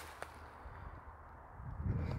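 Quiet background with a light click shortly after the start and a low, muffled thump near the end, from a handheld camera being moved by someone walking.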